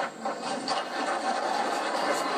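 Audience applause starting: scattered claps that thicken and grow louder.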